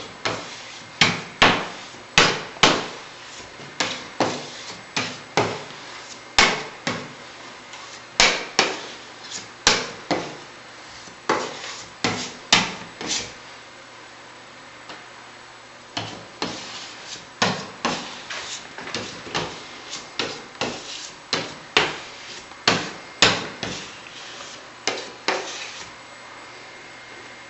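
A steel plastering knife knocking and clacking against a Venetian-plastered wall in short strokes, one or two sharp knocks a second, with a pause of a couple of seconds about halfway.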